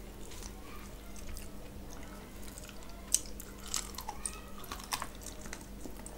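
Close-miked eating sounds of mutton curry and rice eaten by hand: chewing with wet mouth clicks. The clicks are scattered and come more thickly in the second half, the loudest about three seconds in.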